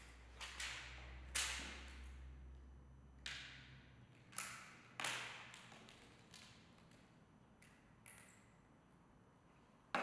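Clear plastic motorcycle helmet visor parts handled on a tabletop: a scattered series of light clicks and taps, each with a short ringing tail, the sharpest about a second and a half in.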